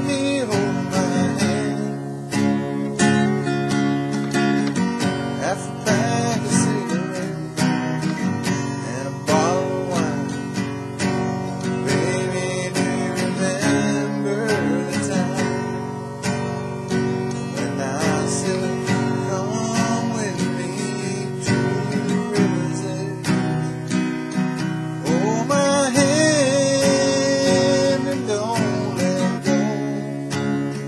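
Acoustic guitar strummed steadily to accompany a man singing a country-style song, his voice coming in at intervals over the chords.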